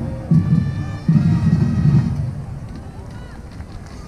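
Muffled talking close to the microphone for about the first two seconds, over faint, steady distant music. Then it gives way to quieter open-air stadium background.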